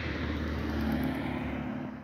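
A road vehicle passing by, its tyre and engine noise building to a peak about a second in and then easing off.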